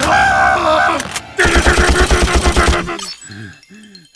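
Cartoon sound effects: a loud strained vocal cry for about a second, then a rapid juddering run of heavy hits, about eight a second, ending near the three-second mark, then a few quieter short wobbling tones that rise and fall.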